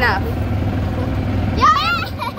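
Steady low rumble of an open cart driving along a bumpy dirt track. A high-pitched voice cries out briefly at the start, and a louder rising squeal comes near the end.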